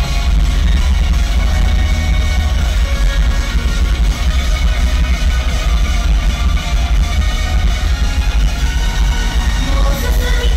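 Loud live pop concert music over a venue PA system, an instrumental dance section with heavy bass and a steady beat and no singing.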